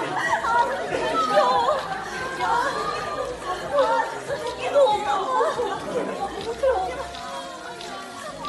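Several voices chattering at once, fairly high-pitched, with no clear words, growing quieter toward the end.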